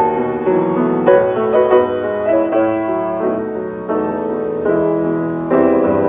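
Mason & Hamlin Model A grand piano, freshly restrung with new bass and treble strings, being played: a flowing passage of melody over chords, with a louder chord struck near the end.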